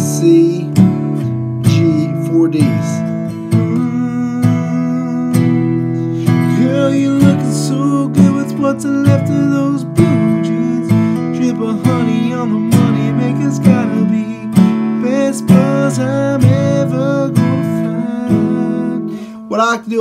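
Taylor GS Mini acoustic guitar, capoed at the second fret, strummed with the fingers in a steady rhythm through a C, G, D, E minor chord progression, with a man's voice singing along in the middle stretch.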